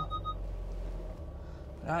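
Volkswagen van's parking sensor beeping rapidly while parking, a quick on-off tone that stops shortly after the start, over the steady low hum of the van's idling engine.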